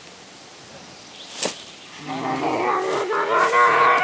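A drawn-out vocal sound from a person's voice, held on one wavering pitch and growing louder through the second half. It comes after a single sharp click.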